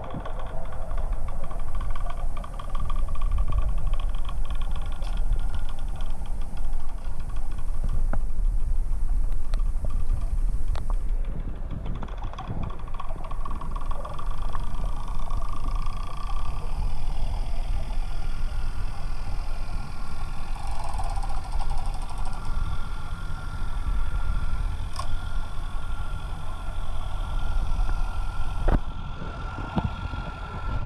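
Muffled, steady low rumble of underwater noise picked up by a submerged camera, with a faint steady whine running through it and a few small clicks.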